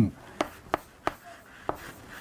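Chalk writing on a blackboard: four short, sharp taps as chalk strokes land on the board, with faint scratching between them.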